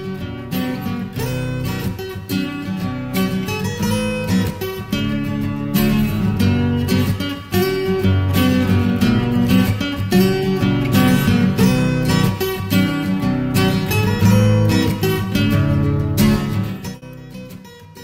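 Background music: strummed acoustic guitar with a steady rhythm, fading down near the end.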